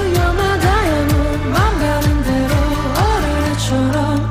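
Pop-rock band song: a male lead vocal sings a gliding melody over electric bass, guitar and a steady drum beat.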